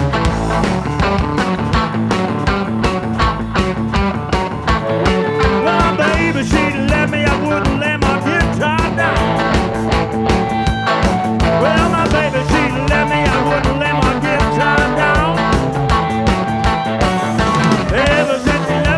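Live electric blues band playing: drum kit, bass and electric guitars keep a steady beat, and from about six seconds in a harmonica plays bending, wavering lines over them.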